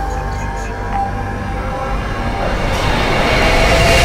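Cinematic intro music with a heavy low bass and sustained tones, a rising noise swell building over the last second or so.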